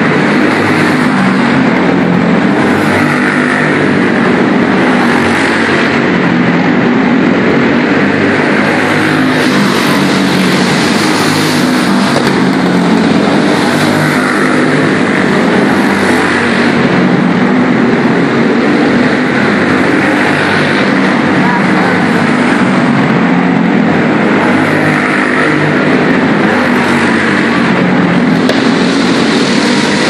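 Small dirt-track race cars running laps together under racing throttle, their engines swelling and fading every couple of seconds as they pass, inside a covered arena.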